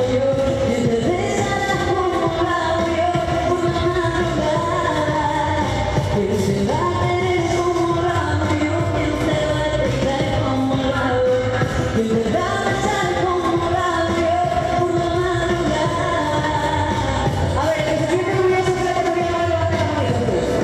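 A woman singing into a microphone over backing music with a steady low beat, her melody holding long notes.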